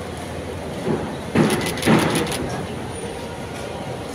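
Busy airport concourse ambience: a steady background noise, broken by two short loud sounds about a second and a half in, with a quick run of high clicks between them.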